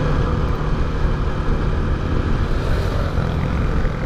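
Motorcycle engine running steadily at cruising speed under way, with wind rushing over the microphone. The drone holds an even pitch without revving.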